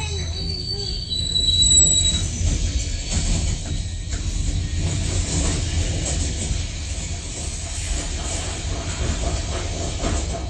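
Freight train boxcar rolling along the track: a steady low rumble and rattle, with thin high wheel squeals during the first two seconds.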